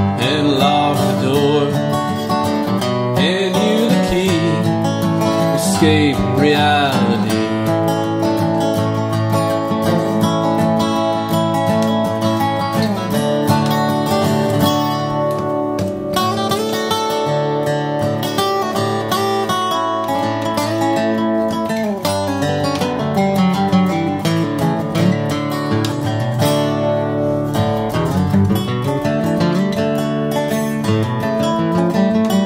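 Instrumental break of an acoustic rock song: a flat-top acoustic guitar strumming chords under lead lines played on a wood-bodied resonator guitar.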